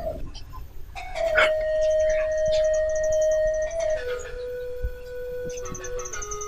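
Background film score: a sustained synthesizer note enters about a second in and steps down to a lower held note around four seconds, with a quick high pulsing pattern above it.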